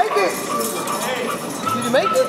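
Indistinct voices carrying through a large, echoing indoor trampoline and obstacle-course hall, with two short rising squeaks, one at the start and one near the end.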